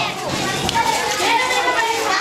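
A crowd of children's voices, many talking and calling out at once in a continuous hubbub.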